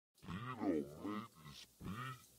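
A man's deep voice making a drawn-out vocal sound with no clear words for about a second, then a shorter one near the end.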